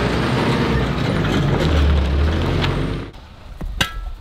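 Small tipper truck's diesel engine running as the truck sets off, with a deep steady hum that swells briefly about two seconds in. The sound cuts off about three seconds in.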